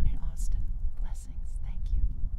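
Low, steady rumble of wind on the microphone, with faint breathy traces of a woman's voice over it.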